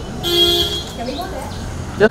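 A single short horn toot, about half a second long, over faint background voices.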